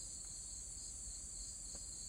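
Steady, high-pitched chorus of insects calling.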